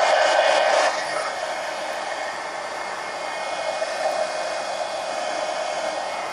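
Heat gun blowing steadily to dry a wet acrylic paint wash on paper, a little louder for about the first second.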